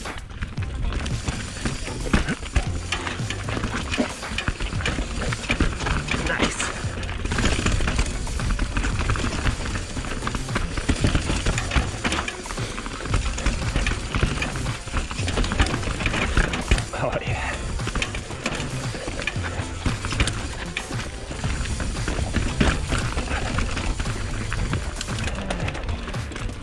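Mountain bike rolling over a dirt trail full of roots and rocks: tyre noise on the dirt with frequent clicks and rattles from the bike over bumps, and a low rumble of wind and knocks on the camera.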